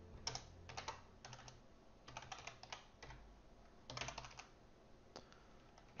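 Faint typing on a computer keyboard: several short bursts of quick keystrokes with pauses between them.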